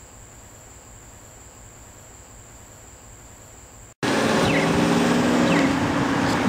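Faint outdoor background with a steady high-pitched insect buzz. About four seconds in it cuts off abruptly to loud city street noise: traffic with a vehicle engine running and a few short falling chirps.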